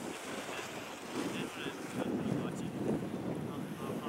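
Wind buffeting the microphone, an uneven rumble that rises and falls in gusts.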